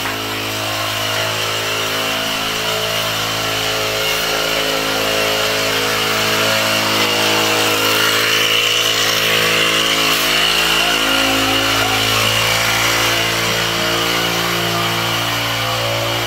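Small engine-driven disinfectant sprayer running steadily at a constant pitch.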